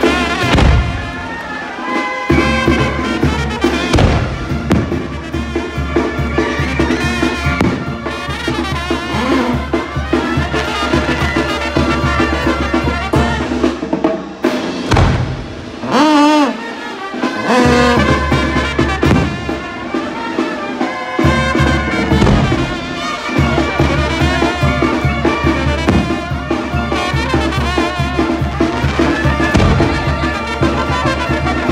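Loud brass band music with trumpets, trombones and drums playing.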